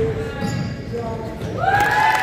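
Basketball being dribbled on a hardwood gym floor, a few echoing thuds. Players' voices call out in the gym during the second half.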